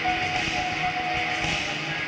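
Live rock band playing, with electric guitar and keyboard, heard as a dense wash of sound. A single steady note is held over it for about a second and a half.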